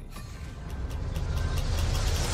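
Film-trailer sound design: a deep rumbling surge that swells steadily louder, mixed with music.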